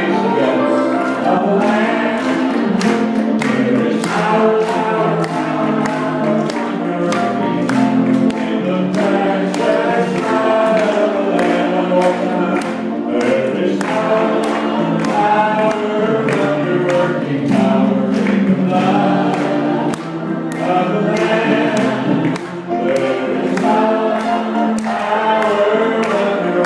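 A gospel song sung by many voices together, the congregation joining in, over organ and piano accompaniment.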